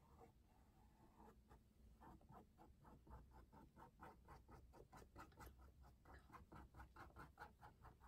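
Faint, quick short strokes of a small paintbrush on canvas, about four a second, starting about two seconds in.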